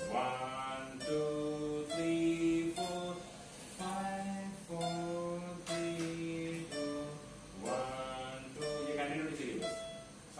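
Casio electronic keyboard played one note at a time: a slow run of held single notes, about one a second, as in a beginner's five-finger exercise. A voice comes in briefly near the end.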